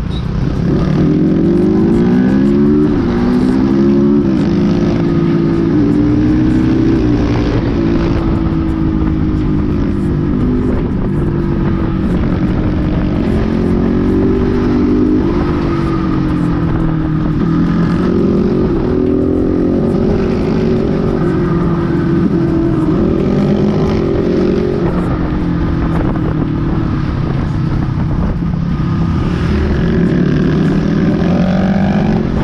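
Motorcycle engine under way, its pitch climbing and dropping again and again as the rider accelerates, shifts and backs off.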